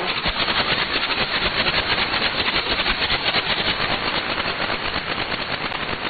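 Shortwave receiver static in upper-sideband mode: a steady hiss carrying a rapid, even pulsing crackle, many pulses a second, with no voice on the channel.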